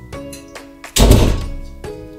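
An interior door pulled shut, landing with one loud thud about a second in, over background music.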